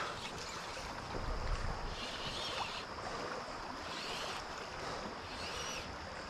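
Steady rush of shallow river water flowing over a rippling riffle.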